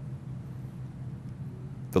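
Room tone during a pause in speech: a steady low hum with faint hiss. A man's voice starts again right at the end.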